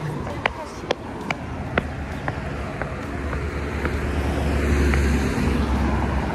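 Footsteps on pavement, sharp and even at about two steps a second, fading over the first four seconds. A low rumble then swells near the end.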